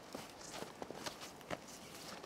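Footsteps crunching in fresh snow on a forest path, about five irregular crunches.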